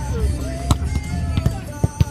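A volleyball being struck by hand during a rally: three sharp slaps in under two seconds, the last one loudest near the end. Background music plays throughout.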